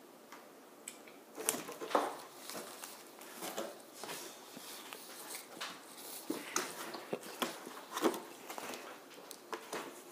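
Irregular scuffling, scratching and knocks on a cardboard cereal box as a kitten inside it swats and struggles, starting about a second and a half in.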